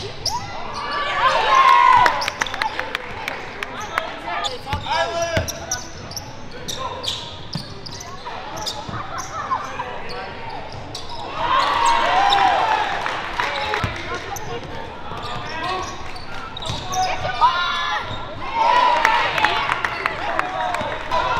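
Live basketball game sound in a gym: the ball bouncing on the hardwood, sneakers squeaking, and players and onlookers calling out, echoing in the large hall. The louder stretches of voices and squeaks come about a second in, about halfway through and near the end.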